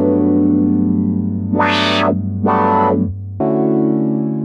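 GForce OB-E software synthesizer, an Oberheim 8-Voice emulation, playing a sustained chord. Twice, about halfway through, the tone opens up bright and buzzy for half a second as the envelope sweeps the filter open, then settles back. The chord stops briefly near the end and starts again.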